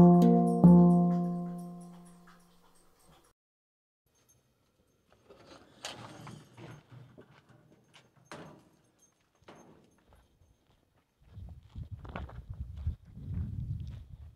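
A plucked guitar chord strikes about half a second in and rings out, fading over a couple of seconds. After a quiet gap come faint scattered clicks and steps, then a low irregular rumble near the end.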